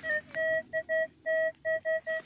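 Metal detector giving a run of short, uneven beeps at one steady pitch as a clod of soil is passed over its search coil: it is signalling metal inside the clod.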